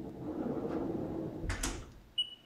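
Sliding enclosure door of a Haas UMC five-axis CNC machining centre rolled shut along its track, ending in a knock and rattle about a second and a half in.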